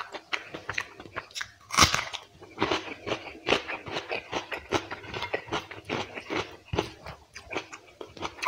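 Close-miked chewing and crunching of a mouthful of quail curry and rice, in irregular crisp crunches, the loudest about two seconds in.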